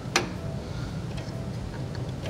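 Faint ticking with one sharper click near the start, over a low steady hum, as a Ridgid R4331 thickness planer's cutterhead is turned slowly by hand.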